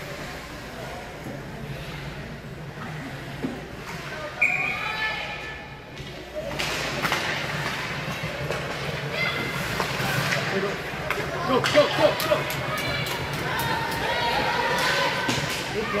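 Ice hockey rink sound: spectators' voices and calls over a steady low hum, growing busier about halfway through, with a cluster of sharp knocks from sticks and puck against the boards about twelve seconds in.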